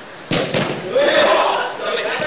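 A futsal ball kicked hard: two sharp thuds about a quarter second apart, then players shouting.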